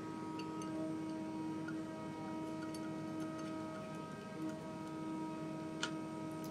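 Hand screwdriver with a T25 Torx security bit snugging up the bolts of a billet aluminium guard: faint scattered clicks, with a sharper click near the end, over a faint steady hum.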